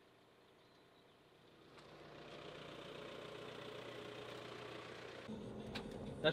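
Near silence for about a second and a half, then a faint, steady vehicle engine hum fades in and holds, growing deeper and fuller near the end.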